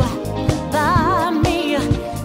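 Live soul-pop dance band playing with a steady drum beat about two hits a second; in the middle a held note wavers with vibrato.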